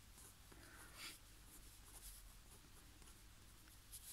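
Near silence, with the faint scratch of a fountain pen nib drawing lines on paper.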